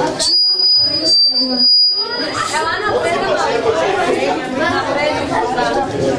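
Many voices of children and adults chattering and talking over one another. For about the first two seconds a thin, high, steady tone sounds over quieter voices before the chatter fills in.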